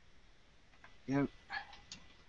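Two short vocal sounds over quiet room tone: a louder, pitched one about a second in and a shorter, higher one about half a second later.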